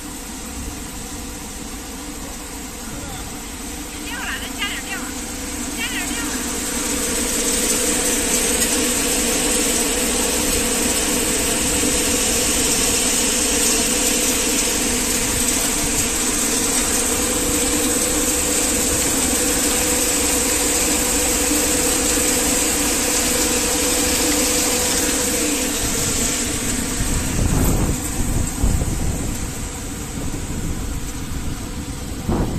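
5XZC-5DH grain cleaning machine running steadily: its motors hum while the vibrating screen deck shakes and green mung beans rattle out of the outlets into the collecting bins. The sound grows louder several seconds in and stays level, with a few uneven low rumbles near the end.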